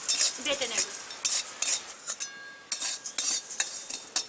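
Metal spatula scraping and stirring whole spices around a metal kadai in quick repeated strokes, with a short break a little past halfway.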